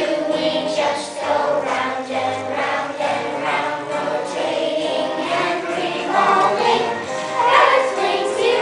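A children's choir singing a song together.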